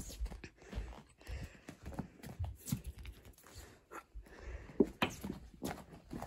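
Faint, scattered footsteps and handling noise: soft knocks and rustles at uneven intervals.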